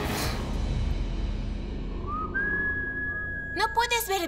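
Dramatic TV background score: a noisy whooshing swell at the start, then a single steady high-pitched tone held from about two seconds in. A woman's voice breaks in near the end.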